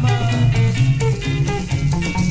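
Instrumental passage of a 1960s–70s Angolan rumba band recording: plucked guitar lines over a bass guitar line, with light percussion ticking steadily.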